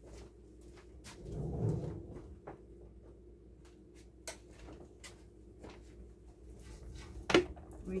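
Faint off-camera kitchen handling: a cabinet being opened and shut while a spice container is fetched. There are scattered small clicks, a low bump about a second and a half in, and a sharp knock near the end.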